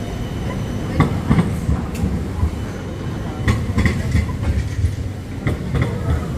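Melbourne tram running by on the street rails: a steady low rumble, with several sharp clacks and knocks scattered through it.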